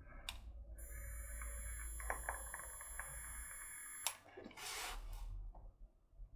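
An e-cigarette coil firing at 13.5 watts during a draw of about three seconds: a faint hiss of air with a thin high whine and a few crackles of liquid on the coil. It cuts off with a click about four seconds in, and a breathy exhale of vapour follows.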